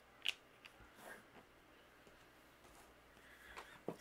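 Stamping supplies handled on a craft desk: one sharp plastic click about a third of a second in, a few softer taps in the next second, then near silence.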